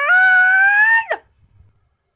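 One loud, high-pitched cry lasting about a second, its pitch rising a little and then dropping sharply as it ends.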